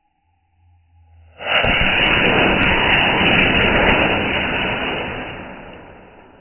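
Firework rockets igniting: a sudden loud rushing hiss starts about a second and a half in, with a few sharp crackles, then slowly dies away near the end.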